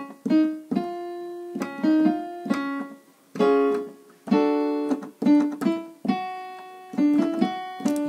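Piano accompaniment for a staccato/legato vocal exercise: short phrases of quick detached notes, each ending on a longer held note, played in succession.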